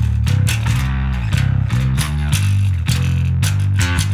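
Electric bass guitar played through Logic's Bass Amp Designer, a quick even run of picked low notes. The tone is a clean bass signal with some dirt from distortion pedals blended in.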